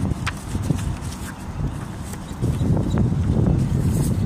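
Outdoor roadside noise: a low rumble with a few light clicks, growing louder about two and a half seconds in.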